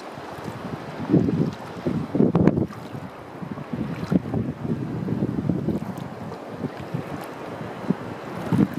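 Wind buffeting the microphone in uneven low gusts, over shallow water sloshing and lapping around the legs of someone wading.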